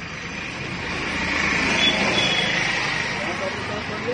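A road vehicle passing by, its noise swelling to a peak about halfway through and then fading.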